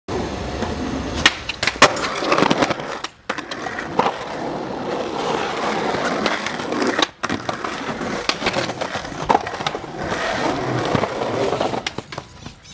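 Skateboard wheels rolling over concrete pavement, broken by several sharp clacks and slaps of the board as tricks are popped and landed. The rolling drops out briefly twice.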